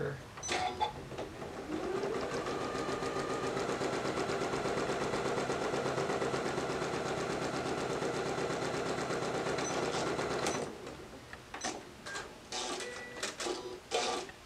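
Electric sewing machine stitching a seam through quilting cotton, speeding up over the first couple of seconds and then running fast and steady before stopping about three-quarters of the way through. A few light clicks and fabric-handling noises follow.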